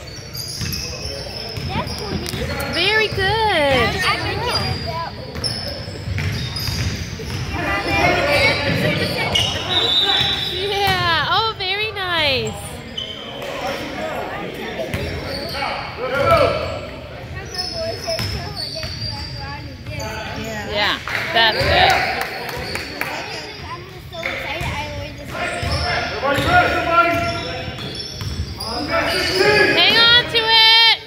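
Indoor basketball game: a ball bouncing on the hardwood court, sneakers squeaking in quick high chirps, and players' voices, all echoing in the gym.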